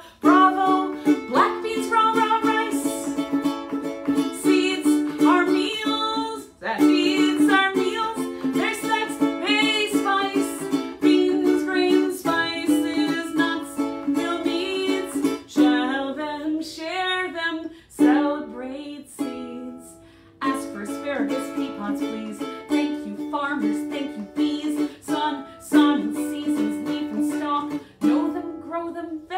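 Ukulele strummed with a woman singing along, with a couple of short breaks in the playing.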